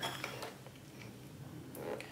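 Faint light clicks from handling small hard objects on a table, over quiet room tone.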